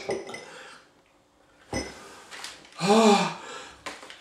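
A drinking glass handled and set down on a wooden table: a light clink, then one sharp knock a little under two seconds in. A man's short groan follows about three seconds in, with another light tap just before the end.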